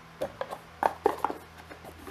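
Small parts and packaging being put back into a product box by hand: a quick string of about half a dozen short knocks and rustles.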